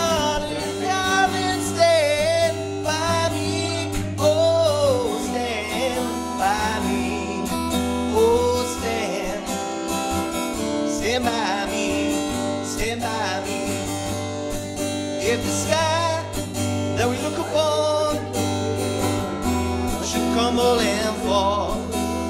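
Live acoustic guitar strummed steadily, with a man's singing voice carrying a melody over it.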